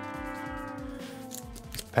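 Trading cards and a foil booster pack being handled, with light crinkles and clicks. Under them runs a long held tone that slowly sinks in pitch.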